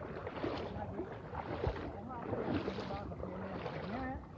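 Feet wading through shin-deep floodwater, sloshing and splashing with each stride, about one step a second. Faint voices are heard in the background.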